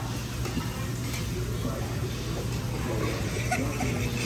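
Restaurant dining-room noise: a steady low hum with faint voices and chatter in the background.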